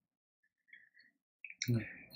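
Near silence for more than a second, then near the end two short clicks followed by a man's brief "mmh".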